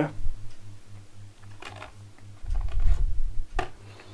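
Handling noise as a small single-board computer is turned over by hand and set back down on its cardboard box: a few light clicks and knocks, the last and sharpest as it lands near the end. There is a low rumble from the handheld camera being handled, over a faint low pulsing hum.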